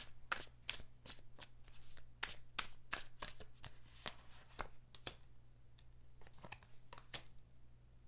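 A deck of tarot cards being shuffled by hand: a run of quick, soft card snaps and slides, denser at first and thinning out before stopping near the end.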